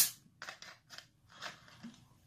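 Plastic bottle of carbonated soft drink being opened: a short, sharp hiss as the screw cap breaks its seal and the fizz escapes, followed by a few faint clicks and crinkles from the cap and the plastic bottle.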